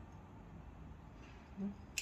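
Quiet room, then near the end a single sharp snip of hand pruning shears cutting through a thin olive-tree stem.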